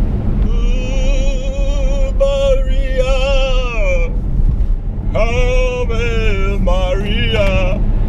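A voice singing two long phrases of high, held notes with strong vibrato, the first about three and a half seconds long and the second a little shorter, over the steady low hum of a car's cabin on the move.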